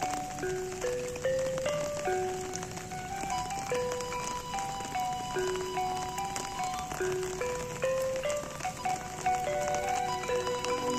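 Sundanese degung gamelan music playing a slow melody of single held notes, over a steady patter of rain.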